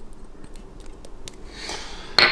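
Faint handling sounds as minced garlic is scraped and tapped off a small dish into a slow cooker crock of potatoes: a few light, separate clicks and taps.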